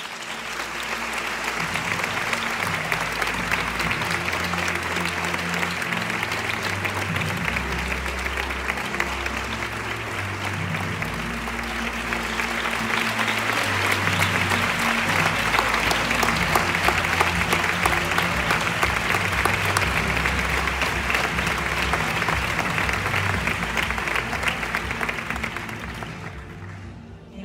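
Audience applauding steadily, growing louder about halfway through and easing off near the end, with music playing underneath.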